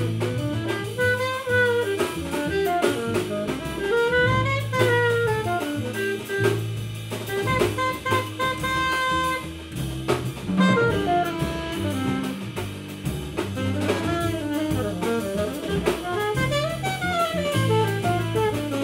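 Live jazz: an alto saxophone plays quick lines that run up and down in pitch, over walking double bass and drum kit with cymbals.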